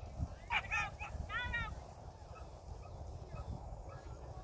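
Excited hound yelping: a sharp high yelp, then a quick run of four or five high yelps about a second and a half in, over a steady low rumble.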